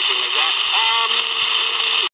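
Talk-show voices on a weak, distant FM broadcast, played through the small speaker of a Wirata LT-608 analog pocket radio, under a steady hiss of reception noise.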